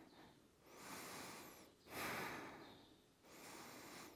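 A woman's faint, slow breathing, in and out, while she holds a side plank pose. The loudest breath is a short one about two seconds in.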